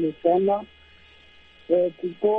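A voice heard over a telephone line speaking in short phrases. It breaks off for about a second in the middle, where a steady low hum on the line remains.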